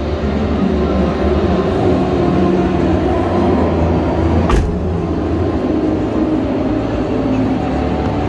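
Steady, loud din of a crowded exhibition hall, echoing, with one sharp knock about four and a half seconds in.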